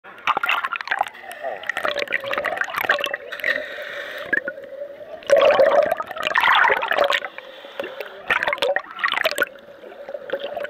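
Sea water sloshing and splashing against a camera held at and under the surface of shallow water, in irregular loud bursts, heaviest about halfway through, over a steady hum.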